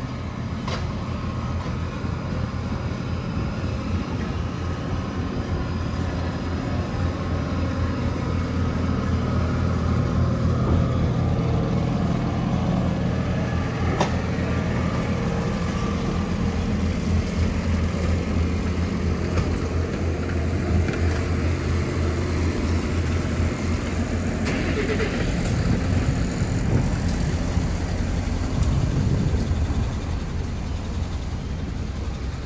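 A motor vehicle's engine running steadily with a low hum, heard over general city street noise.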